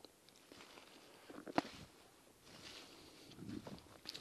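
Faint footsteps crunching through dry leaves and a thin dusting of snow on the forest floor, with one sharp click or snap about a second and a half in.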